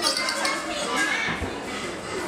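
Indistinct chatter of children and adults in a busy room, with no clear words.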